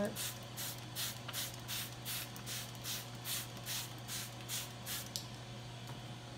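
Hand trigger spray bottle squirting water in quick, even pumps, about two to three a second, stopping about five seconds in: rinsing the soapy water off a freshly wet-sanded model hull.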